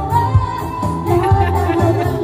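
Live amplified band music: women singing a melody into microphones over a keyboard backing with a steady, pulsing bass beat, played through loudspeakers.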